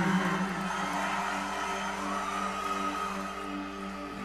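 The tail of a live band's song dying away: a steady, low sustained tone with a faint repeating note above it, slowly fading after the full band stops.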